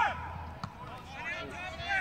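Footballers shouting to each other across an open pitch, in short high calls at the start and again in the second half, with a single faint knock in between.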